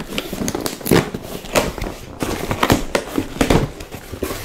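Packaging being handled by hand: an uneven run of crinkles, clicks and crackles.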